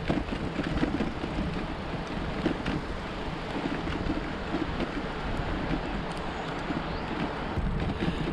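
Steady wind rushing on the microphone of a moving e-bike, with the rolling noise of its tyres on an asphalt road.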